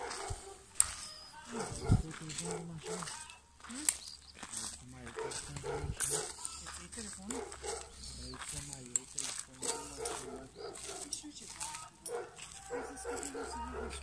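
A dog barking now and then over indistinct voices, with scattered crunching steps on gravel.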